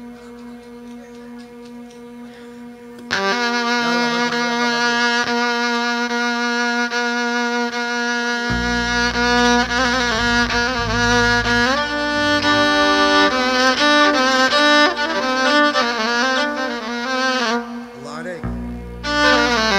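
Live gambus band music. A quieter held note opens it, and about three seconds in a violin melody starts loudly over it. Deep bass joins at about eight and a half seconds.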